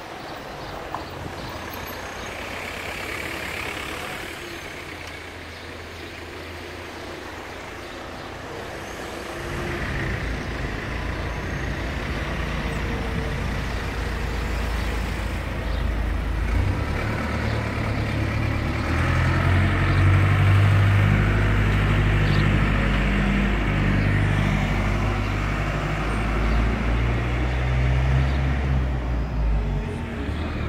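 Street traffic, with a vehicle engine's low rumble growing louder from about ten seconds in and loudest in the second half.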